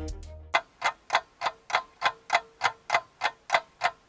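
A clock ticking steadily, about three ticks a second, starting half a second in as the music fades out.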